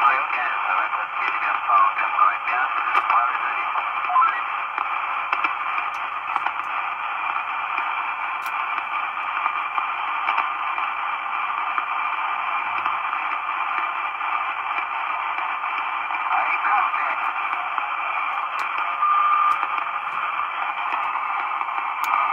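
Marko CB-747 CB radio's speaker playing the 11-metre band: a steady, band-limited hiss of static with faint, garbled voices of distant stations coming through it.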